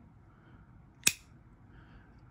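A single sharp snap from an opened thermal-magnetic circuit breaker as its switch is flipped to off by hand, about a second in: the mechanism snapping over as the contacts separate.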